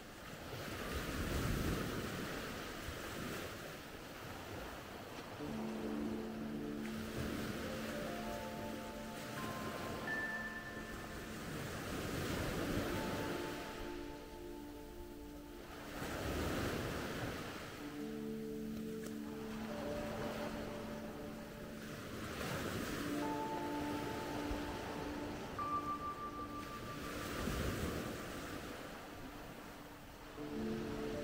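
Small waves breaking and washing up a sandy beach, the surf swelling and fading about every five seconds. Music with long held notes plays alongside from a few seconds in.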